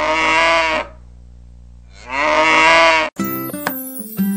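A cow mooing twice, each call about a second long, with a pause between. Music with keyboard and plucked strings cuts in near the end.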